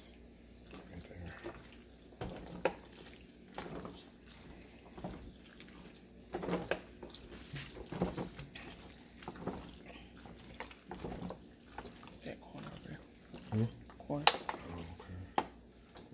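Cheese-sauce-coated corkscrew pasta being stirred in a disposable aluminium foil pan: wet squelching with irregular scrapes and taps of the spoon against the foil.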